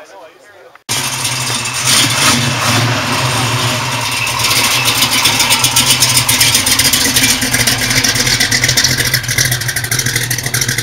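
Car engine running close and loud with mechanical clatter, revved so that its pitch climbs toward the end. It cuts in abruptly about a second in, after quiet surroundings.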